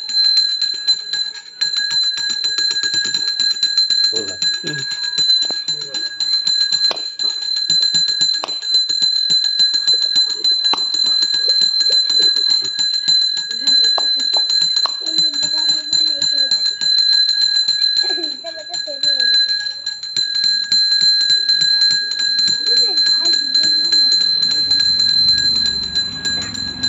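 A puja hand bell rung rapidly and without pause: a continuous, fast stream of bright strikes holding the same high ringing tones.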